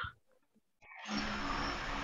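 Video-call audio: the end of a word, dead silence for most of a second, then a click and a steady background hiss with a low hum as a participant's microphone opens.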